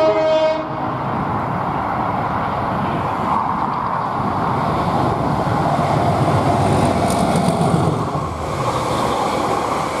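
A Class 37 diesel locomotive sounds a short horn note right at the start, then its English Electric engine and the rumble of the train grow as it passes at speed, loudest about six to eight seconds in, with the hauled vehicles rushing by near the end.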